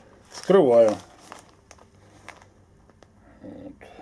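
A plastic packet crinkling as it is handled, with small rustles and a short burst of crinkling near the end; a brief spoken sound comes about half a second in.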